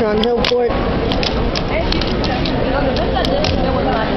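Voices talking in the background, with a few sharp clicks of a fingerboard tapping and rolling on a tabletop.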